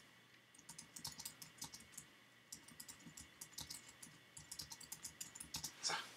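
Faint typing on a computer keyboard: a run of quick, irregular keystrokes as a line of text is typed.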